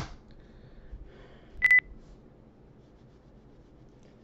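A single short, high electronic beep about a second and a half in, preceded by a faint click at the very start.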